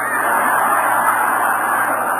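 Lecture audience laughing: a steady swell of crowd laughter that begins as the speech stops and then slowly fades.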